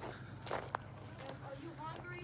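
Footsteps on loose playground wood-chip mulch, a few soft scuffs as someone walks.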